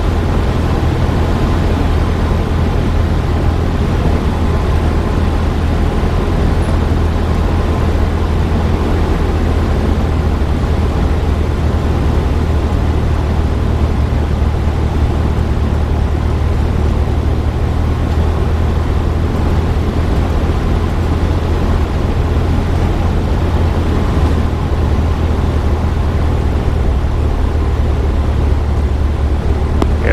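Cabin noise of a Cessna 172SP in flight: the four-cylinder Lycoming engine and propeller make a steady low drone, mixed with the rush of air over the airframe, holding level without change.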